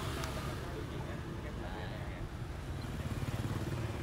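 Street traffic with a motorbike engine running close by, a steady low rumble that swells a little near the end.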